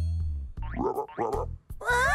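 Cartoon boing sound effects for a small frog hopping, a short rising springy tone, over background music with a steady low bass note.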